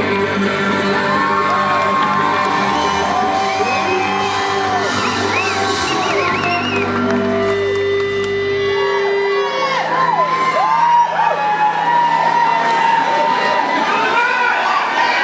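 Live rock band playing an instrumental break led by guitar, with audience members whooping and shouting over it. The low bass notes drop out about nine seconds in.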